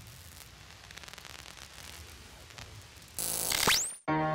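TV-static sound effect: a faint, even hiss of white noise. About three seconds in it jumps to a louder burst of static, and a whistle sweeps quickly up in pitch. Then it cuts off abruptly.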